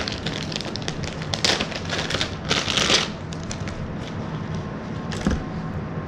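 A GoPro chest-mount harness being handled: irregular rustling of its straps and clicks of its plastic fittings, with the longest rustle about two and a half seconds in.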